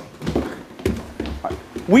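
Handling noise from a phone camera being swung about: low rumbles and a few short knocks in a lull between shouts, with a man's shouting starting again right at the end.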